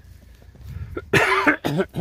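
A person coughing: a loud, harsh cough about a second in, followed quickly by one or two shorter ones.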